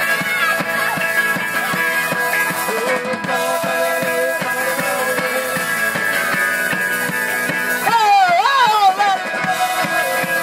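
Live rock band playing an instrumental stretch of a song: electric guitars over a steady drum-kit beat. About eight seconds in, a loud wavering note bends up and down.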